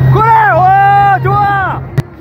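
A long, drawn-out shouted voice in two parts, cheering the rider, over the steady drone of the tow boat's engine. Both stop abruptly near the end.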